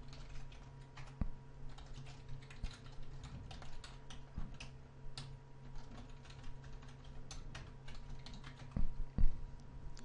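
Computer keyboard typing: a steady run of keystrokes, with two heavier knocks near the end, over a faint steady hum.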